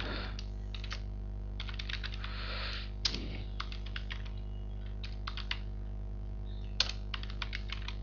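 Computer keyboard being typed on in short runs of keystrokes with pauses between. Under it runs a steady low electrical hum from a buzzy microphone.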